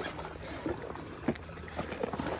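Rummaging in a fabric backpack, a few short clicks and rustles, over a steady low hum.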